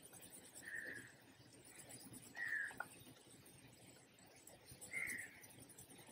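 A bird calling faintly three times, short calls about two seconds apart.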